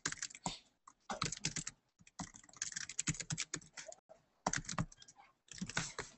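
Typing on a computer keyboard: irregular runs of quick key clicks with short gaps between them.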